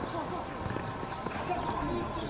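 Several people shouting and calling to each other at a distance across an open pitch, overlapping, with scattered light thuds.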